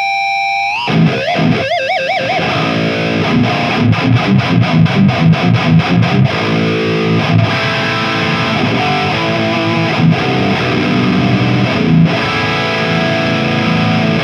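High-gain distorted electric guitar from a Mooer 005 Brown Sound 3 (5150-style) preamp pedal, played through an EVH 5150III head's power amp and a Marshall cabinet. A held note bends upward and wavers with vibrato, then comes a quick picked run and sustained chugging chords.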